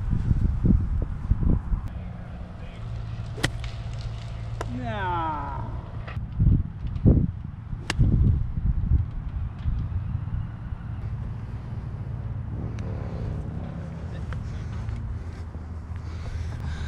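Golf club striking the ball twice, two sharp clicks about four and a half seconds apart, over a steady low hum. A falling whistle-like tone follows the first strike.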